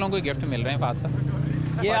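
A motor vehicle engine running with a steady low drone through the second half, under scattered male voices of a street crowd. A man starts speaking near the end.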